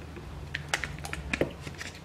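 Light clicks and taps of plastic grocery packaging being handled, a rapid irregular series of them over most of the two seconds.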